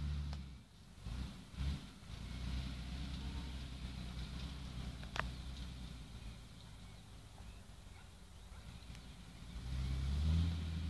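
Distant tractor engine working under load as it pulls a two-furrow plough: a low, steady rumble.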